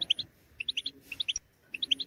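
Caged European goldfinch giving short, high chirps, a scattering of separate notes across the two seconds.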